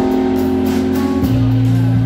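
Jazz quartet playing: Nord electric keyboard holding chords over a hollow-body electric guitar, double bass and a drum kit with steady cymbal strokes. The bass moves to a new, lower note about a second in.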